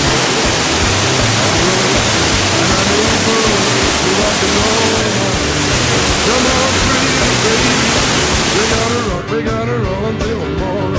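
Loud, steady rush of a waterfall pouring into a rocky gorge, mixed with rock and roll music. The water noise cuts off abruptly about nine seconds in, leaving the music.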